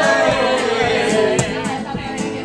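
Live singing to a strummed acoustic guitar: one long sung note slides slowly downward over steady strums, about three a second.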